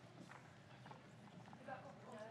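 Near silence: the room tone of a hall, with a few faint taps and a faint, distant off-microphone voice near the end.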